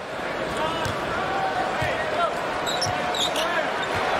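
A basketball being dribbled on a hardwood court, with a few short thuds over the steady hubbub of an arena crowd.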